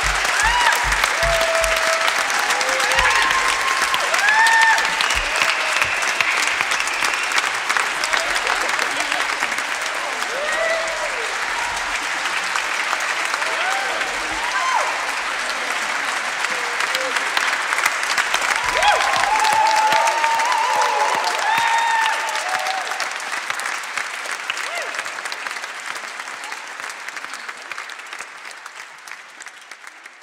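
A concert-hall audience applauding, with whoops and cheers through the clapping. The applause fades out over the last several seconds.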